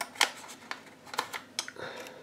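Scattered light metal clicks and ticks, about half a dozen at uneven intervals, from a squeeze-handle ice-cream scoop being worked while it portions cake batter into paper liners.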